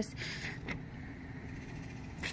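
A steady low background rumble, with a brief faint rustle near the start.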